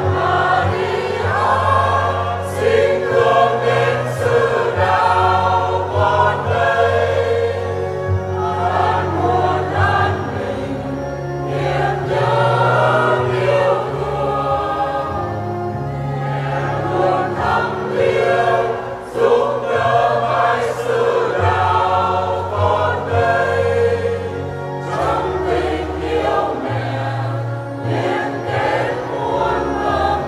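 A choir sings a Vietnamese hymn to Mary in Vietnamese, over instrumental accompaniment that holds sustained low bass notes, changing every few seconds.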